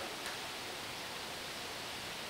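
Steady, even hiss of room tone and recording noise, with no other distinct sound.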